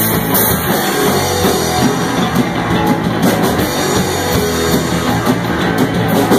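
Live rock band playing loud and steady, with drum kit and electric guitar.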